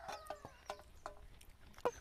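A hen clucking faintly, with a few soft clicks.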